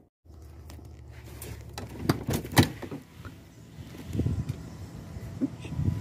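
Sharp clicks, then heavier thumps, of a vehicle door being handled and opened, over a low steady hum.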